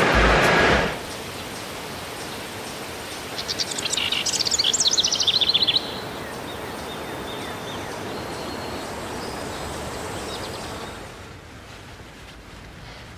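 Outdoor ambience: a songbird sings a quick run of high, rapidly repeated chirps for about two and a half seconds over a steady background hiss. It follows the end of a music cue in the first second.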